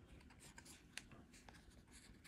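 Near silence, with faint rubbing and a few soft clicks from fingers handling a small fibre eyelet board.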